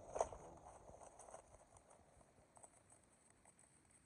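Crumpled brown kraft packing paper rustling and crinkling as it is handled, with one sharper crackle just after the start, then faint scattered crackles.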